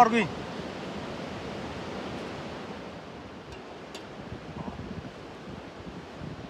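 Steady wind noise outdoors, with a few faint light clicks about three and a half and four seconds in.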